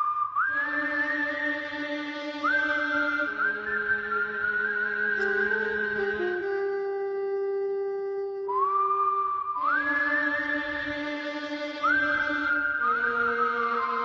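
Slow instrumental music: a high lead voice slides up into each long held note over sustained lower chords, and the phrase starts over about eight and a half seconds in.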